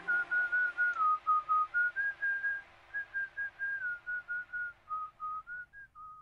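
A whistled tune of short notes stepping up and down in pitch, part of the soundtrack music, fading out at the end.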